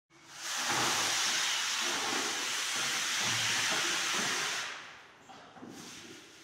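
A loud, steady hiss that starts about half a second in, holds for about four seconds and then fades away.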